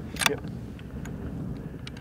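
Wind buffeting the microphone, a steady low rumble with a couple of faint ticks.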